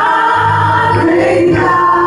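A church praise team of three women and a man singing a gospel song in harmony into microphones, holding long notes, with a change of chord about one and a half seconds in.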